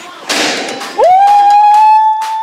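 A thump as a board held up by a partner is struck, with a short noisy tail, then a person's long shout of "Woo!", rising in pitch and then held on one steady note, louder than the thump.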